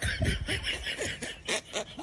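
Someone laughing in a string of short, breathy snickers.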